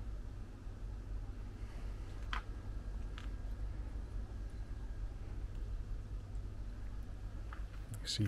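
Quiet background: a steady low rumble, with a few faint clicks about two and three seconds in and again near the end.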